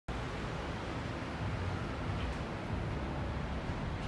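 Steady, even background noise of a parking garage, strongest at the low end, with no distinct events standing out.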